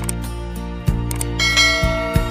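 Instrumental song intro with steady low sustained notes, over which a sharp click sounds about a second in and a bright bell ding rings out soon after: a subscribe-button click and notification-bell sound effect.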